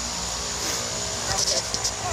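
Burning fuse on a cluster of Excalibur artillery firework shells, hissing steadily, with a few sharp crackles about one and a half seconds in, just before the first shell fires.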